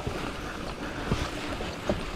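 Wind rushing over the microphone together with the steady wash of a brown river swollen by heavy rain, with a couple of faint ticks.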